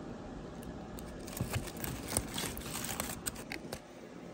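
Aluminium foil wrapping crinkling and crackling as it is handled, a dense flurry of small crackles from about a second in until near the end, over a steady low background hum.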